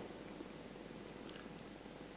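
Faint steady room tone and hiss in a pause between sentences, with no distinct event.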